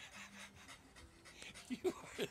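A dog panting in quick, heavy breaths: a French bulldog exerting itself as it humps a chihuahua. A brief louder vocal sound comes near the end.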